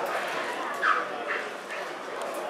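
A dog barking twice in quick succession, the first bark louder, over a low murmur of voices.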